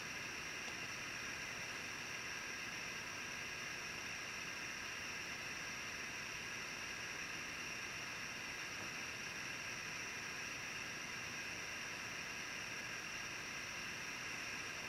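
Faint steady hiss of background room tone and recording noise, unchanging throughout, with no other sound.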